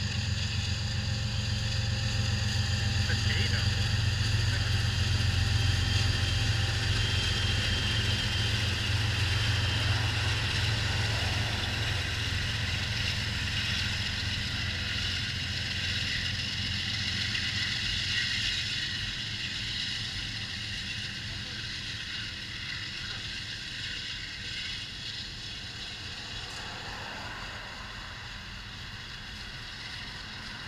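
BNSF freight train passing close by: the low, steady drone of its diesel locomotives is loudest in the first several seconds and fades as they move off, leaving the continuous rolling noise of covered hopper cars' wheels on the rails, which slowly dies down toward the end.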